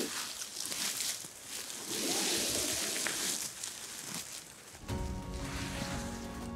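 Rustling and scraping of clothing against grass, moss and dry leaf litter as a person shuffles along the ground on his bottom. Music comes in about five seconds in.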